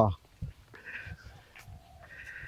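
A domestic cat meowing faintly, with drawn-out meows about a second in and again near the end.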